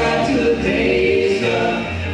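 Men's voices singing a gospel song in harmony, with held sung notes.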